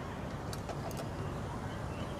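Steady low background rumble of outdoor ambience, like distant traffic, with a few faint ticks.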